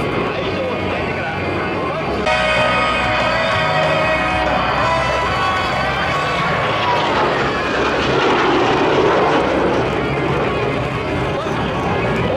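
Kawasaki T-4 jet trainer passing, its engine noise swelling with a falling pitch from about seven seconds in. A voice and music play underneath.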